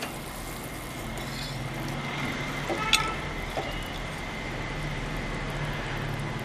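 Tamarind curry boiling in a steel pot, a steady bubbling hiss over a low hum. There is one sharp metallic clink about three seconds in and a lighter tap shortly after.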